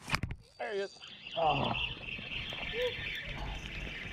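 Spinning reel being cranked close to the microphone, a steady whirring retrieve. A few sharp knocks at the start as the hand brushes against the camera.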